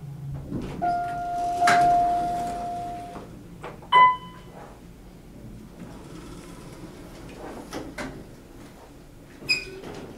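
Otis hydraulic elevator car arriving and cycling its doors: a steady tone for about two seconds, then a single bright arrival chime about four seconds in, the loudest sound. The sliding doors run open and shut, with a click, and a shorter, higher ding comes near the end.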